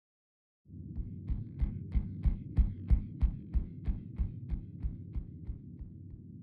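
Sound-design drone over an end card: after a moment of silence, a low hum with a steady throbbing pulse about three times a second. The pulse grows louder, then fades away.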